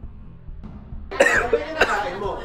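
A man coughing hard, in sudden bursts starting about a second in, his throat burning from an extremely hot chili lollipop. Faint background music runs underneath.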